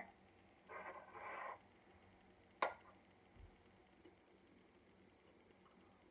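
Near silence broken by a brief soft rustle about a second in, then a single sharp click of a metal fork against a china plate.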